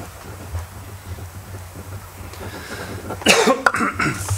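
Quiet room hum over a microphone, then a loud cough close to the microphone a little over three seconds in.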